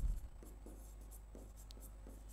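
Faint scratching of chalk being written across a chalkboard in short strokes.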